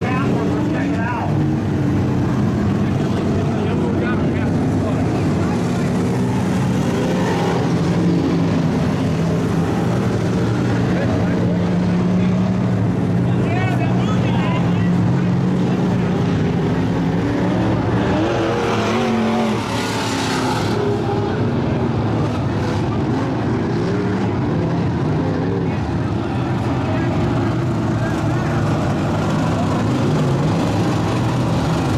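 Dirt-track race car engines running at low, steady revs under a yellow caution, with grandstand crowd chatter over them.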